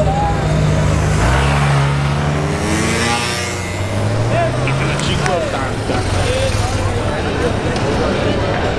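Ferrari sports car engine accelerating past, revs climbing and stepping down with a gearshift, then rising again, with crowd voices around it.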